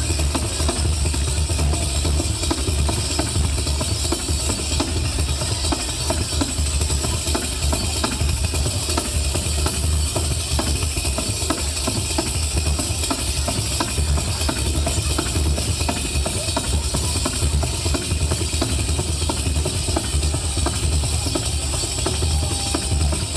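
Live folk band playing pizzica, tamburello frame drums keeping a fast, steady beat over guitars and bass.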